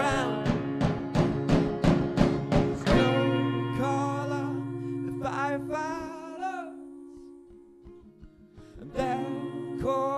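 Acoustic guitar strummed hard, about four strokes a second, for the first three seconds, then long sung notes from a man and a woman together as the guitar rings down and the music drops quiet. Strumming and singing return about nine seconds in.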